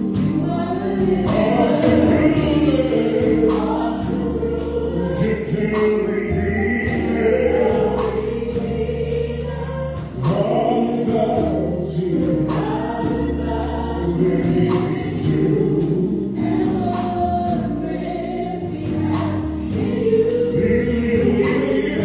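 Live gospel praise singing: a woman and a man singing into microphones over keyboard accompaniment, with a steady beat.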